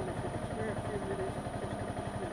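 Sport motorcycle engine idling with a steady, even pulse, heard close from the rider's seat.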